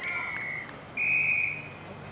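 Umpire's whistle blown twice on an Australian rules football field: a shorter blast, then a louder, slightly higher one about a second in.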